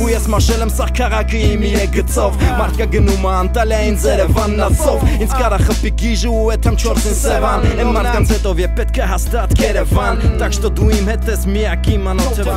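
Armenian rap song: a voice rapping over a hip-hop beat with a deep, steady bass.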